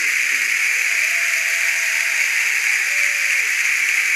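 Audience applauding and cheering after a live comic song, a steady wash of clapping with a few faint voices calling out.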